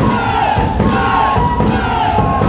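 Many voices shouting and whooping together during a Contradanza folk dance, over a steady held instrumental melody and low thumping.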